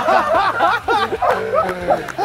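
Several men laughing heartily together, with snickers and chuckles overlapping.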